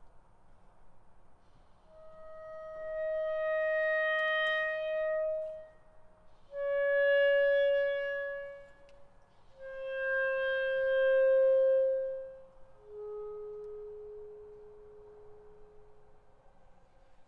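A clarinet playing a slow descending line of four long held notes, each a step lower than the last, with short gaps between them; the last note is quieter.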